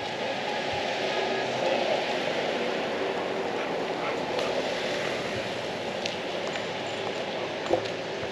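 Steady outdoor background noise, with a single sharp knock near the end.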